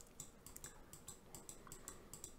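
Faint, scattered clicks from a computer mouse and keyboard over near-silent room tone.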